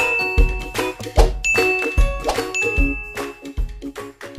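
Background music with a steady beat, with bright bell-like ding sound effects chiming three times.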